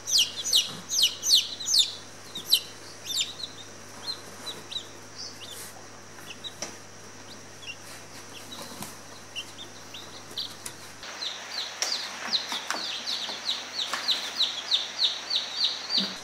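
Newly hatched bantam chicks peeping: short, high chirps that fall in pitch, thick in the first couple of seconds, sparser in the middle, then a steady run of about three peeps a second over the last five seconds.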